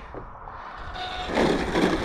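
A car passing on the road, its tyre and engine noise swelling about halfway through.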